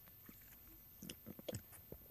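Someone biting into and chewing a raw lemon: faint, with a quick run of short wet clicks and crunches starting about a second in.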